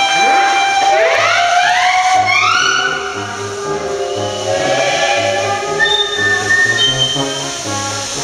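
Steam locomotive whistles sound, several overlapping calls whose pitch rises over the first three seconds or so. Brass band music with a steady oom-pah bass plays throughout.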